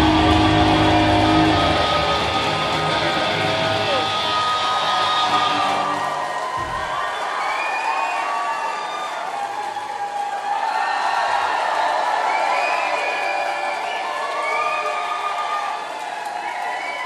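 A rock band's last chord rings out through the PA and dies away over the first few seconds. After a single low thump, the crowd cheers and shouts.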